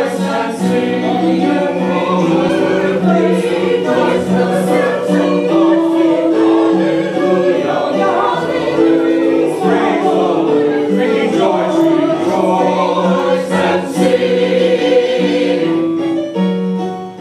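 Church choir of men and women singing together.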